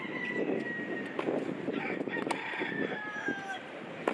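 A rooster crowing in the background: a long, drawn-out call that slowly falls in pitch. It sounds over the ambience of an outdoor tennis court, with a sharp knock about two seconds in.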